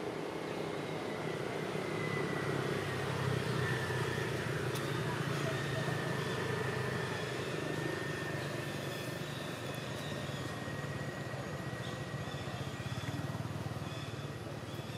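Steady low rumble of a motor vehicle engine running in the background, a little louder for a few seconds in the first half. A thin, steady high tone runs through most of it.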